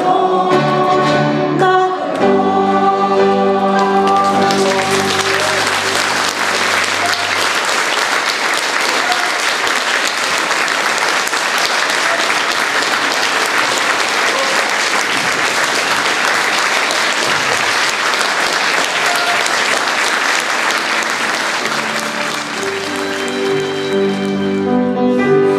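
A song for female voice, piano and accordion ends on its last held notes in the first few seconds; then an audience applauds, steady and sustained, until just before the end.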